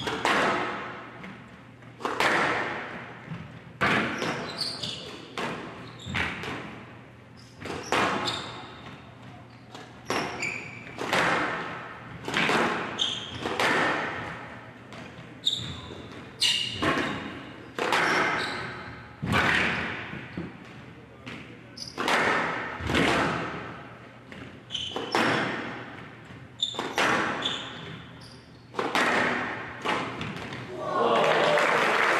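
A long squash rally on a glass court: the ball cracks off rackets and walls about once a second, and each hit rings out in the hall.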